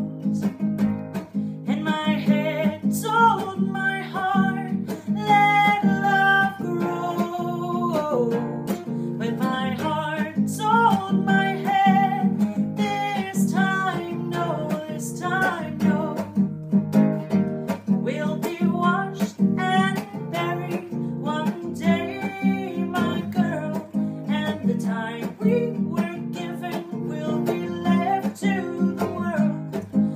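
A woman singing over a strummed acoustic guitar, with steady chords under a sung melody throughout.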